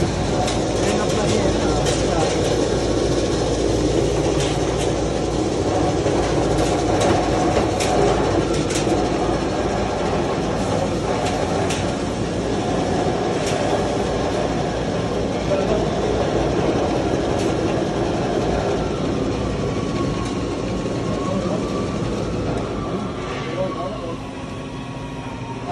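Wheat cleaning and grading machine running: a steady mechanical rattle from its shaking sieve and fan, with scattered sharp ticks.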